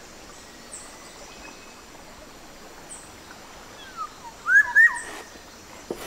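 Forest background hiss with birds calling: a few faint high chirps, then two loud looping whistled calls about four and a half seconds in.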